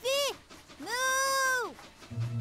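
Cartoon voices calling 'moo' in imitation of cows: a short falling call, then a longer high call that is held and trails off.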